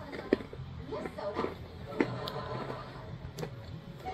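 Chewing a hard, sugary finger biscuit, with a few sharp crunches: one about a third of a second in, one about two seconds in, and a weaker one later.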